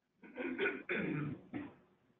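A person clearing their throat in three short rasps, heard over a call line that cuts off the highs.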